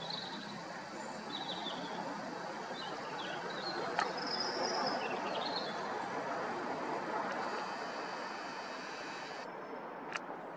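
Outdoor morning ambience: a steady background hum of distant traffic with small birds chirping and calling through the first half, and a single sharp click about four seconds in.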